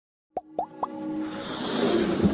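Electronic intro jingle for an animated logo: three short pops that each rise quickly in pitch, about a quarter second apart, followed by a swelling riser that builds up.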